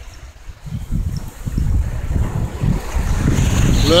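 Wind buffeting the phone's microphone, an uneven low rumble in gusts that picks up about a second in.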